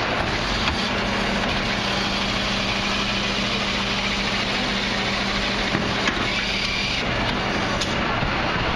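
Rear-loader refuse truck (Mercedes Econic with Dennis Eagle body) running with its hydraulics engaged while its Terberg bin lifter raises and tips a large four-wheeled bin into the hopper. A steady hum sits under the engine noise, with a few sharp knocks in the second half.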